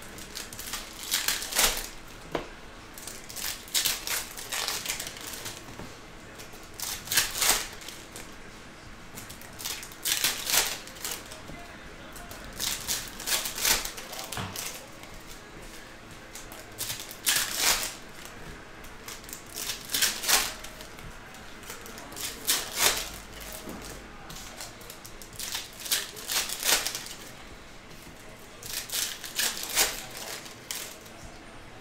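Foil trading-card packs being torn open and the glossy chrome cards inside slid and flicked through by hand, in short crisp bursts of crinkling and snapping every few seconds.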